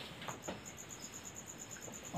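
A cricket chirping in a fast, even pulse, about eight pulses a second, with a few faint soft strokes of a cloth wiping a whiteboard.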